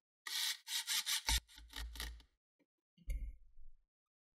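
A hand rubbing back and forth over a laptop's metal bottom cover: a quick run of scrubbing strokes with a dull thump about a second in, then one shorter rub near the end.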